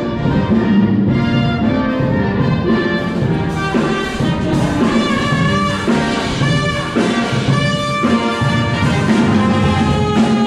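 Live street brass band playing a tune: trombone, saxophone, tuba and trumpets, loud and close.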